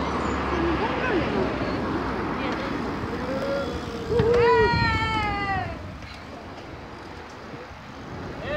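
Wind and road noise on a microphone moving with a group of cyclists, with a person's long, high-pitched call about four seconds in that slides down in pitch over about a second and a half.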